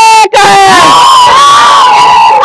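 A group of women shouting a protest slogan in unison, loud: a short shout, a brief break, then one long drawn-out shout from several voices together.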